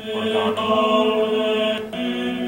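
A recording of a male vocal ensemble singing chant in long-held notes, with a steady low note sounding under the higher voices.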